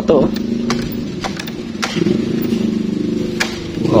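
A motor vehicle's engine running steadily, a low hum whose pitch wavers slightly, with a few light clicks over it.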